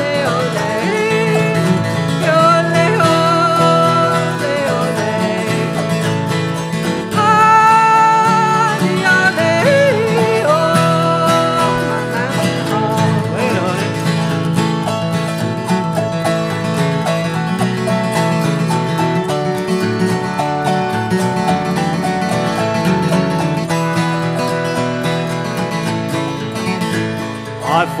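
Instrumental break of an old-time mountain song, played on autoharp and flat-top acoustic guitar between sung verses. A melody line slides between notes over the first dozen seconds.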